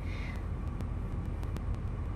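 A steady low background rumble with a faint hiss above it, with no other sound standing out.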